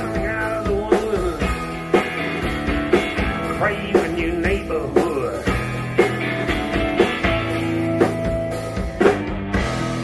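Live rock band playing: electric guitar, electric bass and drum kit, with a sharp drum hit about once a second.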